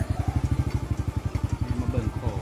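Small motorcycle engine running at low speed, a rapid, even, low putter as the bike rolls slowly along.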